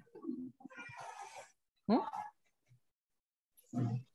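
A short vocal call sweeping steeply upward in pitch about two seconds in, among fainter scattered sounds, with a brief low voiced sound near the end.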